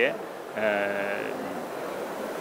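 A man's voice: a short word, then a drawn-out hesitation sound held on one wavering pitch for under a second while he searches for his next words, followed by the low murmur of a busy exhibition hall.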